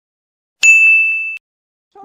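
A single high electronic ding or beep, starting suddenly about half a second in, held steady while fading a little, then cutting off abruptly.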